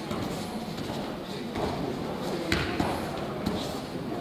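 Judoka going down onto the tatami mat: a sharp thud about two and a half seconds in, followed by a smaller knock, over the murmur of voices in a large hall.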